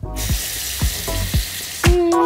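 Water tap running into a bathroom sink, a steady hiss that starts suddenly, over background music with a regular beat.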